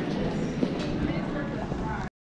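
Rolling suitcase wheels rumbling and clattering over a tiled terminal floor, with the steady hubbub of the concourse around them.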